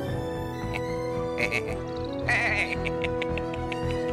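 Background music on sustained held notes, with a cartoon bird character giving two short cackles, about a second and a half and two and a quarter seconds in.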